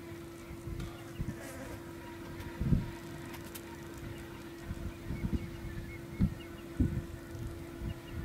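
A steady, even buzzing hum, with a few dull low thumps now and then.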